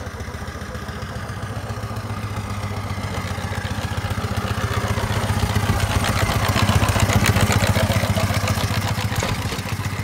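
A 4-inch scale Burrell steam traction engine running, its exhaust beats and motion clatter coming in a fast, even rhythm. The sound grows louder to a peak about seven seconds in, then eases.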